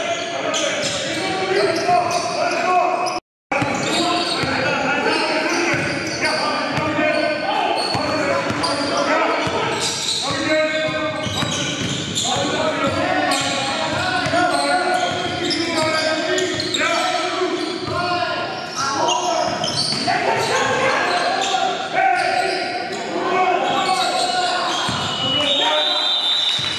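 Game sound from a basketball game in a gymnasium: a basketball bouncing on the hardwood court amid overlapping players' and spectators' voices, with the hall's reverberation. The sound cuts out to silence for a split second about three seconds in.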